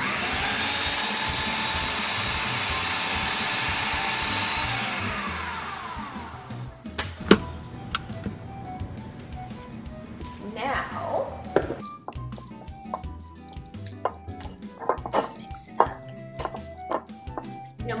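Blender motor running at speed for about four and a half seconds, pureeing steamed peas, broccoli and asparagus with parmesan and chicken stock. It then switches off and spins down, its pitch falling. A single sharp click follows about seven seconds in.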